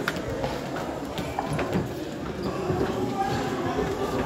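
Indistinct voices of people talking in the background, with footsteps clicking on a stone floor.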